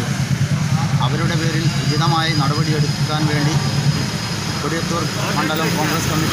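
A man speaking in Malayalam over a steady low rumble.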